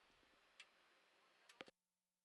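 Near silence: faint room tone with a few faint ticks, one about half a second in and a quick cluster of three near the end, after which the sound cuts out.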